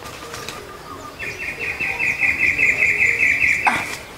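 A high, evenly pulsed trilling call from a small wild creature in forest undergrowth, holding one pitch. It starts about a second in, lasts about two and a half seconds, and ends with a short crackle.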